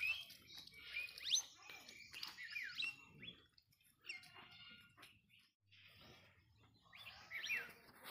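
Birds chirping, with many short, quick sweeping calls in the first three seconds and again near the end, and a quieter stretch in between.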